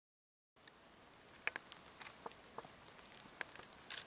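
Silent for the first half second, then faint outdoor ambience in a snowy forest: a steady soft hiss with scattered small clicks and ticks, two sharper ones about a second and a half and three and a half seconds in.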